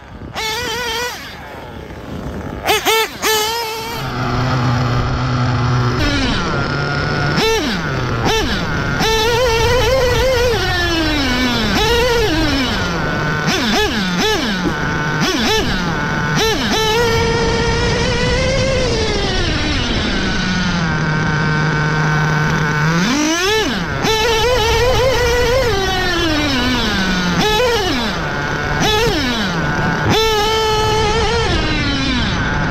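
A TLR 8ight XT 1/8-scale nitro truggy's glow engine revving up and down again and again as it is driven hard, picked up close by a camera mounted on the truck. There are a few sharp knocks about three seconds in.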